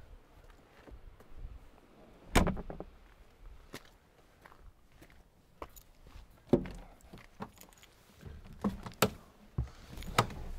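A heavy Land Rover Defender door shut with a solid thunk about two and a half seconds in, then a second thud about four seconds later and a few lighter knocks.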